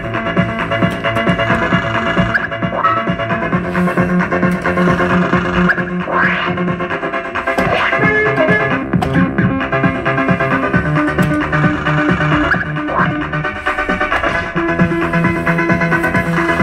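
Fruit machine playing its electronic music and jingles, with a few short rising sweeps and clicks over a steady, repeating tune.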